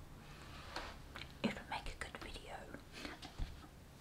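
Faint whispered murmuring and small mouth sounds from a woman, quiet and broken into short scraps.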